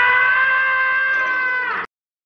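A long, high-pitched scream held on one flat note, cut off suddenly near the end, dubbed in as a comedy sound effect.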